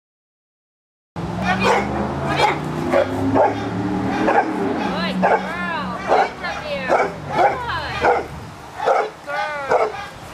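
A young American Bulldog barking repeatedly at a protection-training helper in a bite sleeve, loud sharp barks about two a second, starting about a second in.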